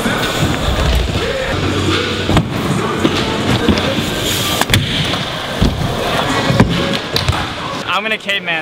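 BMX bikes riding wooden skatepark ramps: tyres rolling, with several sharp thuds of landings and hits spread through.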